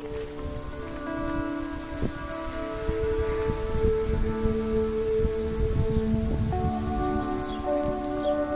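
Calm background music with long held notes, laid over a low, uneven outdoor rumble.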